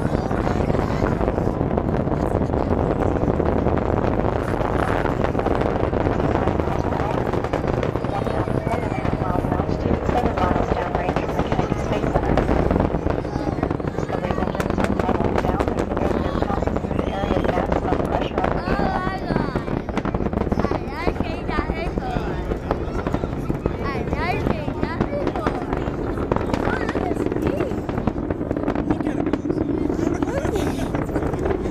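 Space Shuttle Discovery's rocket exhaust heard from miles away during its climb after liftoff: a steady low rumble thick with crackling.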